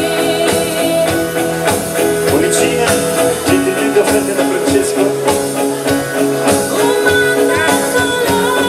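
Live band playing a pop song: drums, electric guitars and bass under a female lead singer's voice, steady and loud throughout.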